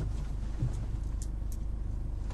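Black cab's engine idling, a steady low rumble heard from inside the passenger compartment, with a few light clicks over it.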